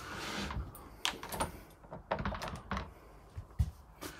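Light clicks and knocks from a caravan's chrome bathroom door handle and latch being worked, with a soft rustle at the start and a quick run of clicks about two seconds in.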